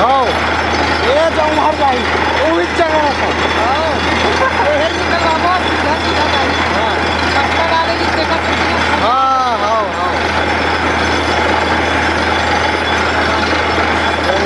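Truck-mounted borewell drilling rig running steadily and loudly while it drills. Men's voices call out briefly over it in the first few seconds and again about nine seconds in.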